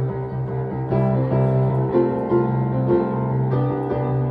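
Solo acoustic piano playing, with new chords struck about once a second over a held low bass note.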